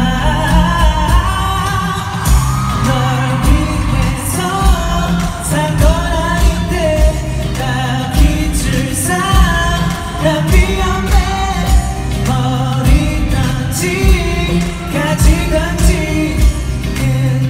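Live pop song: a male singer's vocal over a full backing with bass and a steady drum beat, played through an arena sound system.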